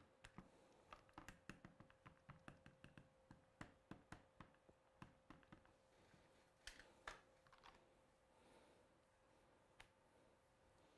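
Faint, irregular light taps and clicks, several a second, thinning out near the end: an ink pad being dabbed onto a clear stamp on a stamping platform to re-ink it in black.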